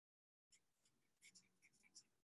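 Near silence, with a few very faint, short ticks in the second half.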